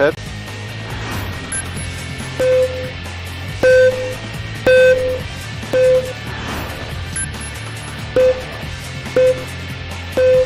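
Electronic tempo beeps from the GO72 golf swing goggles: short single-pitch beeps about one a second, marking a swing rhythm, some louder than others, with a brief higher chirp before each run. Steady background music runs underneath.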